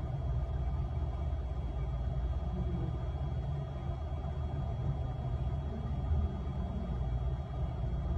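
Steady low rumble of background noise, with a faint thin high whine running through it.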